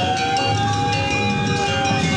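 Balinese gamelan procession music: many ringing metal tones held and overlapping over a dense low rumble of the crowd, with one long tone that rises a little and sinks again.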